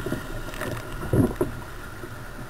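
Sea kayak being paddled through choppy ocean water: water washing and slapping against the hull, with two low thumps close together a little past the middle.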